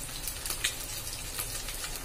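Fish steaks shallow-frying in hot oil: a steady sizzle with scattered small pops and crackles.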